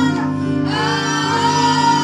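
A woman singing a gospel worship song into a microphone over steady, held instrumental chords, her voice breaking off briefly about half a second in.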